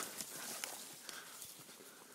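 Faint footsteps and brushing through tall grass and plants on a walking path, with a few light irregular knocks, growing fainter.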